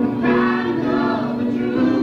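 Music from a poor-quality old recording: a voice singing a long, wavering line over sustained instrumental accompaniment.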